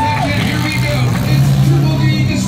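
Engines of compact demolition derby cars running and revving as the heat gets under way, a steady low drone under a busy mix of voices and music.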